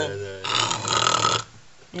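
A woman's voice: the end of a drawn-out 'ja', then about a second of raspy, breathy vocal noise that breaks off abruptly.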